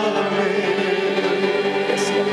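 Live worship music: a male lead singer and a choir singing together, holding a long note.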